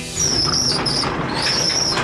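A door squealing on its hinges as it is pushed open: a high, wavering squeal over a rush of outdoor noise, breaking off briefly about three quarters of a second in, then squealing again until near the end.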